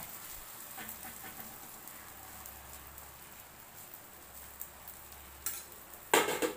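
Noodle-and-egg omelette frying in a flat griddle pan with a faint, steady sizzle, and a few light taps of a spatula against the pan.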